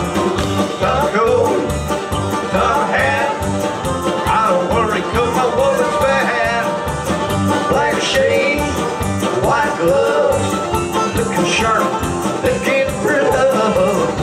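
Live country-bluegrass band playing a song with a steady beat: strummed acoustic guitar, mandolin, electric bass and drum kit.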